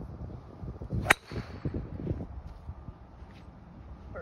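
Golf driver striking a teed ball: one sharp, loud crack at impact about a second in, over wind noise on the microphone.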